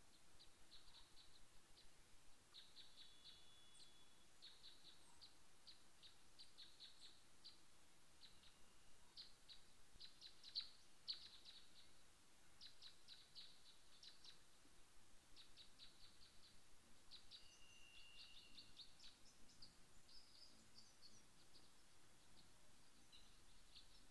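Faint outdoor bird chirping: quick strings of short, high notes in clusters throughout, with a couple of brief thin whistles. Two slightly louder chirps come a little past the middle.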